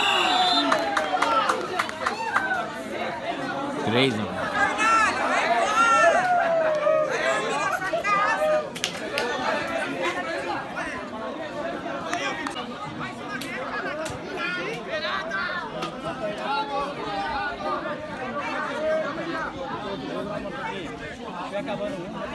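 Several voices of football players and onlookers calling out and chattering at once, overlapping one another. Louder for the first eight seconds or so, then dropping back.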